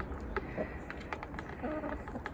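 Backyard hens drinking and pecking at a plastic poultry drinker: scattered faint beak taps, and a short soft hen call near the end.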